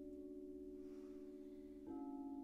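Frosted crystal singing bowls ringing together in several sustained, slightly wavering tones that slowly die away; just before the end a bowl is struck with a mallet and the ringing swells again.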